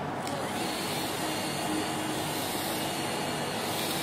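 Steady mechanical background hum and hiss, even and unchanging throughout.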